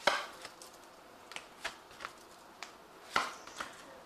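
Cards being handled on a tabletop: a sharp tap at the start, a few light clicks, and a brief swish about three seconds in.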